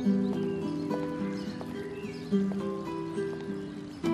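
Background soundtrack music: a light melody of short, sharply struck notes and some held notes.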